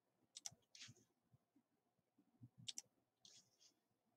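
Near silence with faint computer mouse clicks: a quick double click about half a second in and another near three seconds.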